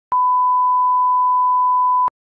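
A 1 kHz line-up test tone played with SMPTE colour bars: a single steady, pure beep that starts sharply.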